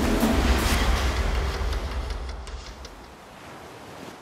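Background score with a deep rumbling drone, fading out about three seconds in and leaving only a faint steady hiss.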